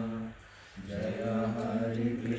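A man chanting a devotional song in long held notes, with a short pause for breath about a third of a second in before the voice picks up again.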